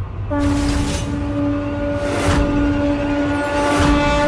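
Dramatic background score: a sustained droning note comes in about a third of a second in and holds, with three sweeping accents spread across it.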